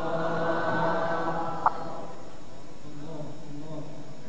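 Male Quran reciter chanting in the melodic mujawwad style, holding one long drawn-out note that fades away about two seconds in. A sharp click sounds just before the note ends, and a softer phrase begins near the end.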